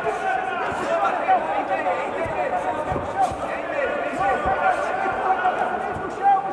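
Arena crowd shouting and chattering, many voices overlapping at once, with a few dull thuds about two to five seconds in.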